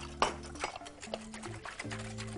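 Soft background music of held, slowly changing notes, with a few light clicks of a whisk against a glass bowl, the sharpest about a quarter second in.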